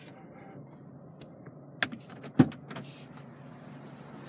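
A sharp click and then a louder short thump about two seconds in, over a faint steady background hum inside a car cabin.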